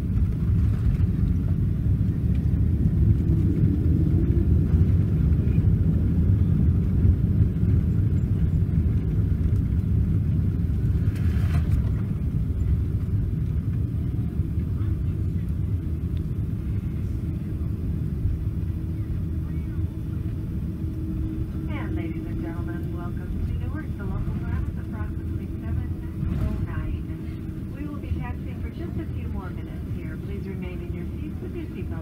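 Deep cabin rumble of a Boeing 777-200 rolling along the runway after landing, slowly getting quieter as the aircraft slows. There is a single knock about eleven seconds in and indistinct voices in the last third.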